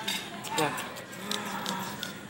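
A person's voice holding one long, low hum-like note, the kind of drawn-out sound a tagger takes for a cow's moo, with light clicks and rubbing from the phone being handled.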